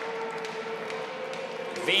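Sports hall ambience between volleyball rallies: a steady murmur of the crowd and players with a faint steady hum and scattered light taps.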